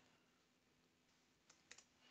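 Near silence, with a few faint, short clicks about a second and a half in.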